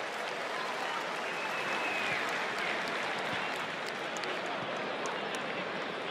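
Football stadium crowd cheering and applauding after a goal, a steady, even din.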